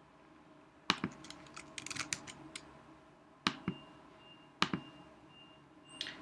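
Computer keyboard keystrokes: a single click about a second in, a quick run of typing, then a few separate clicks.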